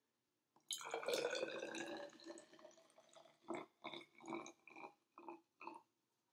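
Copper sulfate solution poured from a small bottle into a plastic graduated cylinder: a steady pour starting about a second in and tapering off, then a handful of short separate glugs and drips near the end.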